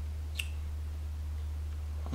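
A single short mouth click about half a second in, from a taster working a sip of whisky around his mouth, over a steady low hum.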